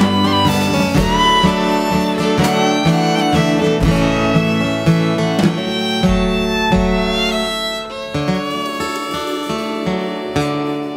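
Fiddle playing an instrumental melody with gliding notes over acoustic guitar, easing down in the last couple of seconds as the song closes.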